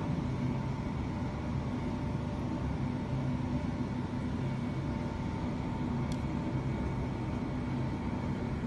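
Steady machine hum with a low drone and a faint higher tone, unchanging throughout, and one faint click about six seconds in.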